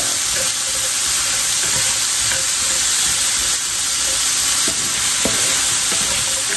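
Diced raw potatoes frying in hot oil in a skillet: a steady sizzle as they are stirred and pushed around with a wooden spatula, with a few light knocks of the spatula against the pan in the second half.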